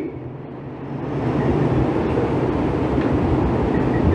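Steady low rumble with a faint hum underneath, dipping at first and then swelling about a second in and holding even.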